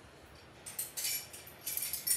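Light metallic clinking, a run of small clinks starting about half a second in, as metal single-line train staffs are handled.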